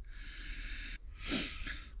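A man breathing out close to the microphone: a long steady airy breath, then a short faint voiced sigh just past the middle.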